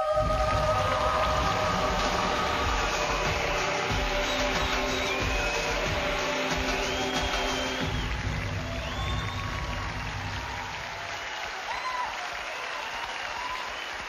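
Show music with sustained chords over studio-audience applause. The music thins out after about four seconds, leaving the applause with a few short rising and falling calls over it, slowly dying down.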